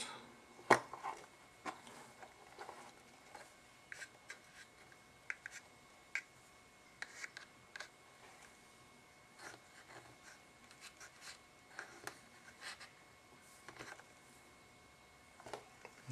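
Faint, scattered clicks and light rustles of hands sorting through small fly-tying materials, searching for a feather.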